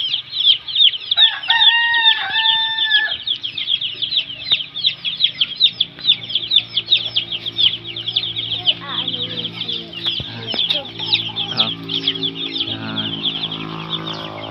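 A brood of chicken chicks peeping continuously: many short, high chirps every second. About a second in, an adult chicken, likely a rooster crowing, gives one longer, lower call lasting nearly two seconds.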